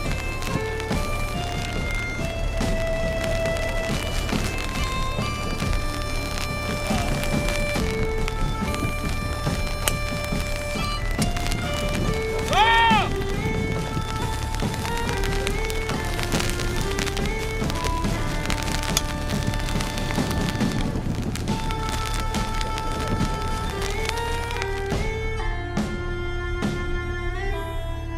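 Instrumental background music: a melody of held notes over a steady low drone, with a brief swooping note about halfway through.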